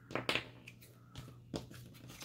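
A few short, faint rustles of paper being handled, the loudest just after the start, from hands moving a paper envelope booklet and glue bottle.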